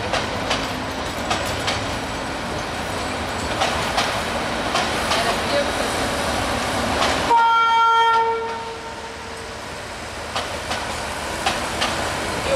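Intercity passenger coaches rolling past on the track, their wheels clicking over the rail joints in pairs as each bogie crosses. About seven seconds in, a train horn sounds one steady note for about two seconds. After that the rolling sound is quieter.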